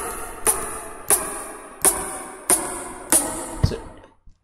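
Programmed rim-shot drum sample playing back from a DAW, six sharp clicks about two-thirds of a second apart, each with a short bright ring. A low thump sounds near the end.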